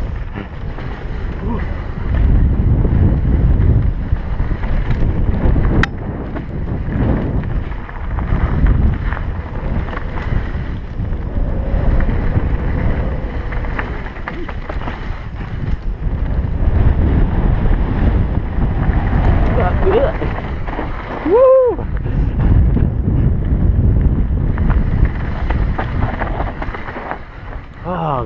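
Wind buffeting the microphone of a helmet-mounted camera on a mountain bike descending a rough dirt trail, with the continuous rumble of the ride surging and easing. About three quarters of the way through there is a brief, wavering pitched sound.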